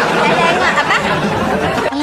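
Several voices talking over one another at once, an indistinct jumble of chatter with no single clear voice.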